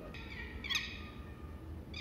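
A bird calling: a few high chirping notes, the loudest a sharp falling chirp under a second in, and another call near the end.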